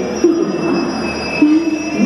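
Train running in the station with wheels squealing on the rails: a set of metallic squealing tones that shift in pitch, over a steady high whine.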